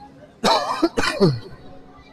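A man coughing and clearing his throat close to a microphone, in two quick bursts about half a second apart.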